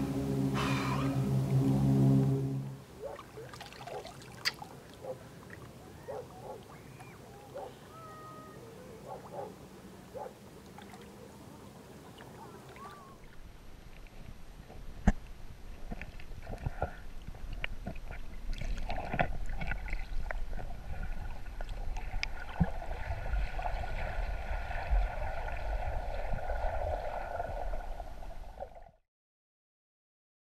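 Muffled underwater sound from a submerged camera: a low rumble of water with scattered clicks and knocks, louder in the second half. It opens with a steady low hum that stops suddenly after about two seconds.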